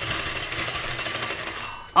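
A tambourine (def) shaken in a rapid, continuous jingle, fading slightly and stopping just before the end.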